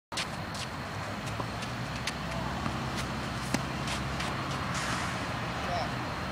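Tennis balls being hit by rackets and bouncing on a hard court during a rally: a string of sharp pops, the loudest about three and a half seconds in, over a steady low hum.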